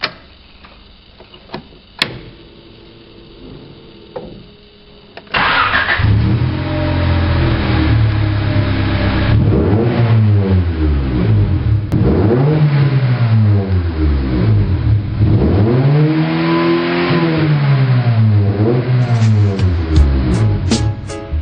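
A few sharp clicks from the dash switches, then a Honda Civic's four-cylinder engine starts suddenly about five seconds in and is revved repeatedly, each rev climbing and falling back. Music comes in near the end.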